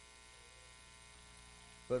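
Faint steady electrical mains hum. A man's voice starts again near the end.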